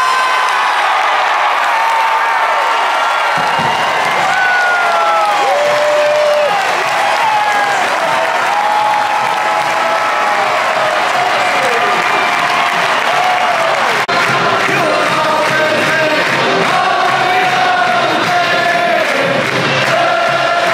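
Large stadium crowd cheering a touchdown, many voices yelling and whooping at once. Music joins in under the cheering about three seconds in.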